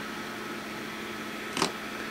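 Steady low room hum with a faint steady whine under it, and one brief soft click about one and a half seconds in.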